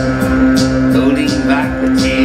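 Live synth-pop band playing loudly: keyboard synthesizer, bass guitar and drums with a steady beat.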